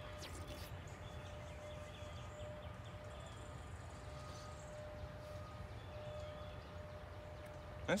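Quiet outdoor background: a low rumble with a faint steady hum that fades in and out.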